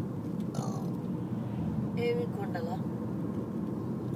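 Steady low rumble of car road and engine noise heard inside the cabin while driving, with brief faint voices about two seconds in.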